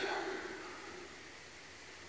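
Quiet outdoor background: a faint, steady hiss. The tail of a drawn-out word fades away during the first second.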